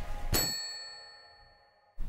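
A single bright bell-like ding, struck once and left to ring, its clear high tones fading away over about a second and a half.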